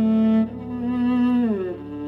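Cello playing long held notes in a chamber-ensemble arrangement, with a slow downward slide into the next note about a second and a half in.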